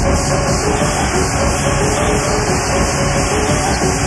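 Old-school acid and hardcore techno from a 1994 cassette DJ mix, in a stretch where the kick drum drops out, leaving a dense, noisy synth wash with a few steady tones.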